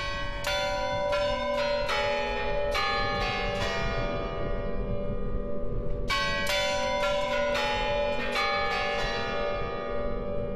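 Spasskaya Tower chime bells struck by their hammers, playing a melody in two quick runs of about a dozen strokes each, with the tones ringing on through the pause between and after the second run.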